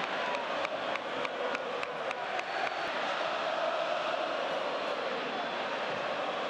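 Football stadium crowd noise: a steady roar of many voices. Over the first three seconds it carries sharp beats, about three a second.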